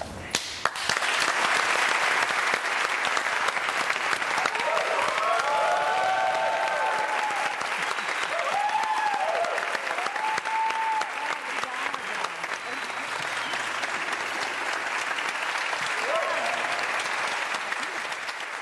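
Studio audience applauding steadily, the clapping starting about half a second in, with a few voices rising over it in the middle.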